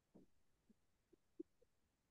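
Near silence, with a few faint, brief low sounds spread across the pause.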